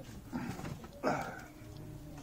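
Faint, brief voices from a small group gathered close by: two short murmured sounds, one about half a second in and one about a second in, with a low background hum in between.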